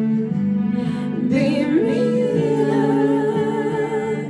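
A woman singing a slow ballad into a handheld microphone over an instrumental backing track; about halfway through her voice slides up into a long held note.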